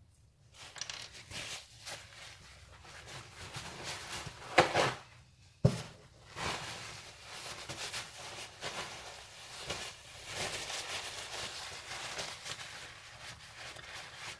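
Rustling and rubbing of a cloth rag being handled, with a louder rustle about four and a half seconds in and a sharp click about a second later.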